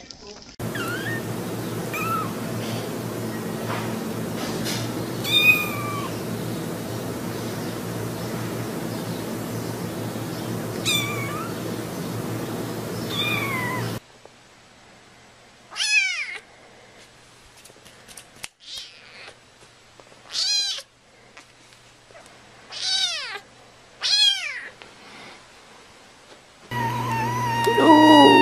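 Cats meowing. For the first half, high, thin mews come now and then over a steady hum. About halfway the hum drops away, and a cat meows loudly four times, each call falling in pitch.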